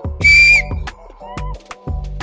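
A short, high, steady whistle lasting about half a second, dipping slightly at its end, over background hip hop music with a steady beat.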